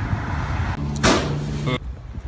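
Street traffic noise, with a loud rushing swell of a passing vehicle about a second in. It cuts off suddenly to quieter outdoor ambience near the end.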